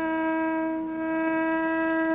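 Carnatic bamboo flute holding one long, steady note at an even pitch.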